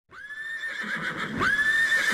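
A horse whinnying: two long, high calls, the second starting about a second and a half in.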